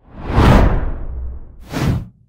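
Logo-animation sound effect: a loud, deep whoosh swelling up in the first half-second and slowly fading, then a second, shorter whoosh near the end.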